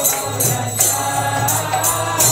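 Kirtan music: a group singing a devotional chant, with hand cymbals (karatalas) striking on a steady beat. A low held note comes in about a quarter second in.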